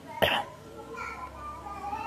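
A single short cough from the man with the microphone held away from his mouth, followed by faint voices in the background.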